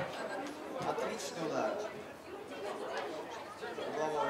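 Chatter of several people talking and calling out at once, the players and onlookers of a small-sided football game, with no single voice standing out.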